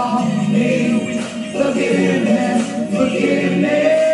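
A woman singing a worship song into a handheld microphone over a karaoke backing track with choir-like backing voices, holding long notes.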